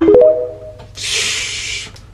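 TikTok end-screen sound effect: a short ringing tone left over from a deep hit, then about a second in a hissing whoosh lasting nearly a second.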